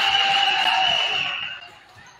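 Spectators and players cheering and shouting after a point is won, with one high voice held above the rest. The cheering dies away about a second and a half in.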